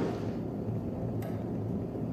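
Low steady hum with a single faint click a little after a second in.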